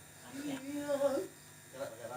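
A voice briefly, over a steady electrical buzz from the sound system.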